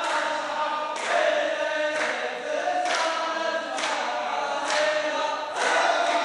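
A group of men chanting a folk song in unison, with sharp handclaps keeping time about once a second.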